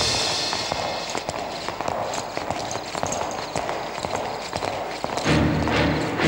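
Footsteps of several men in boots walking on a hard floor, a run of irregular sharp steps. About five seconds in, low, pulsing dramatic film music comes in over them.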